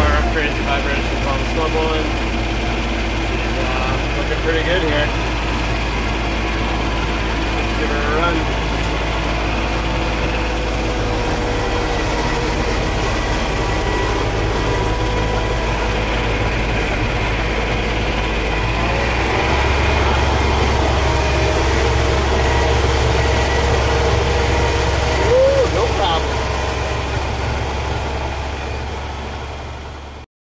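John Deere 2210 compact tractor's three-cylinder diesel running steadily with the PTO engaged, driving the front-mount snowblower as it throws snow, heard from inside the cab. The engine note shifts slightly a little past halfway and the sound tails off near the end. This is the test run of the blower on its newly retrofitted PTO drive shaft.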